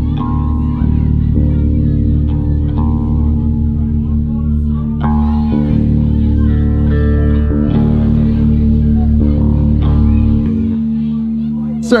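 Amplified guitars being tuned between songs: single plucked notes ring out one after another over long-held low bass notes.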